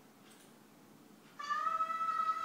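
Electronic keyboard sounding one bright, steady held note that starts suddenly about one and a half seconds in: the first note of the song's opening phrase.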